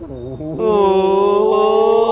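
A man's voice holding one long, steady note, like a drawn-out hum or chant, for about a second and a half. Just before it, starting about half a second in, comes a brief low murmur.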